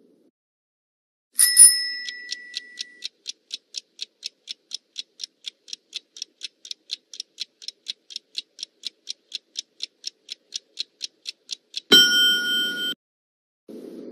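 Countdown-timer sound effect: a chime about a second in, then steady clock ticking at about four ticks a second for some ten seconds, ending in a short alarm ring about twelve seconds in that marks time up.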